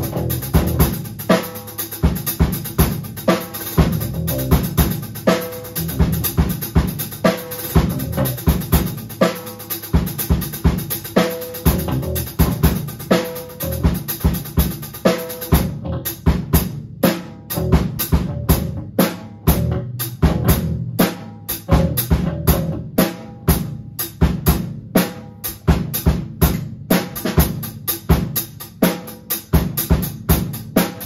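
Live rock band rehearsing an instrumental: a drum kit plays a steady beat under electric guitar and bass played through amps. About halfway through, the constant cymbal wash drops out and the drum hits come through as separate sharp strikes.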